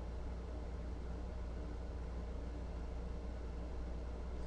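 Steady low electrical hum with a faint even hiss: background room tone, with no distinct events.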